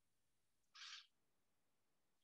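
Near silence, with one brief faint hiss just under a second in.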